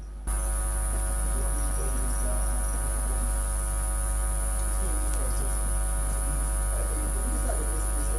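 Loud, steady electrical mains hum with a high hiss on top. It cuts in suddenly just after the start and all but drowns out a faint voice underneath.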